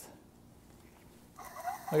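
The brushed 12-volt motor of an early Mercedes 'long' electric fuel pump, bench-tested with its impeller removed, switching on about a second and a half in and running with a steady whir. The motor runs smoothly and its bearings sound okay.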